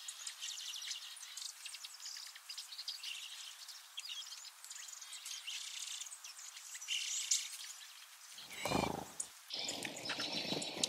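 Small songbirds chirping and calling, many short high notes overlapping. Near the end comes a louder, lower sound lasting about a second.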